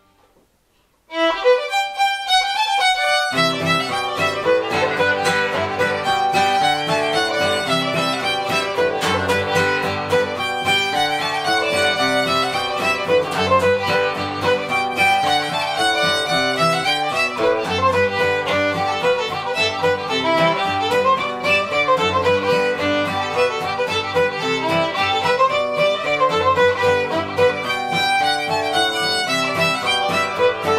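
Old-time fiddle tune played on solo fiddle, starting about a second in, with a lower accompanying instrument joining about three seconds in.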